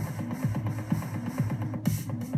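Electronic dance track playing through Traktor, a steady beat over a repeating bass line, put through the Dark Matter macro effect from the Akai AMX.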